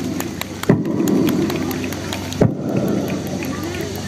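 Crowd applauding: a dense patter of many hands clapping, with a few louder single claps standing out.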